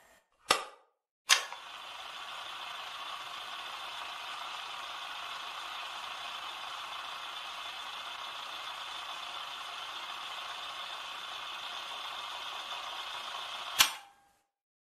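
Two sharp cracks about a second apart, then a steady hiss of noise that ends with one more sharp crack near the end.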